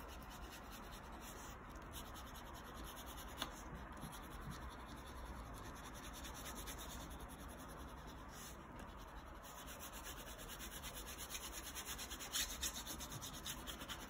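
A wax crayon held on its side and rubbed back and forth across paper, colouring in a broad area: a faint, steady scratchy rubbing. The strokes become a little more distinct near the end.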